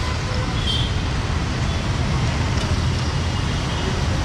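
Steady low rumble of road traffic on a busy city street.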